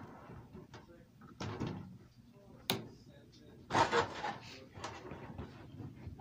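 Plastic clicks and knocks from handling the corner posts and rope of a toy wrestling ring: a string of separate sharp clicks, the loudest a clatter about four seconds in.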